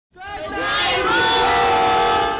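A group of young children shouting together in one long, held cheer, many high voices overlapping.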